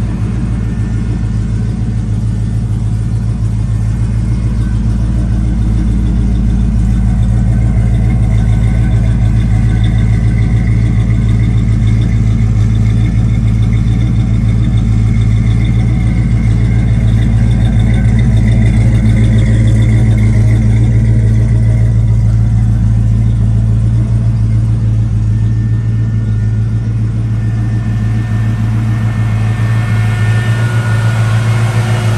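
1969 Dodge Coronet Super Bee's V8 engine idling steadily, a little louder through the middle.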